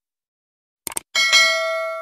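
A bell-like ding struck twice in quick succession about a second in, ringing out with several steady overtones and fading over a second and a half. Two short clicks come just before it.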